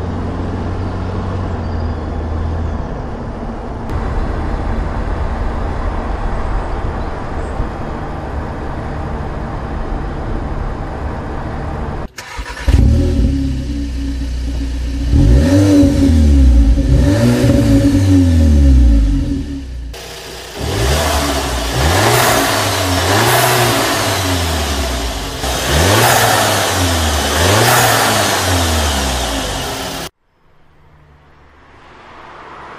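Audi A1 Sportback petrol engine. For about twelve seconds it is a steady driving drone; then, after an abrupt change, it is louder and revved repeatedly, its pitch rising and falling every second or two.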